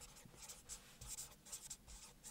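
Felt-tip marker writing on paper: a run of short, faint strokes as letters are written.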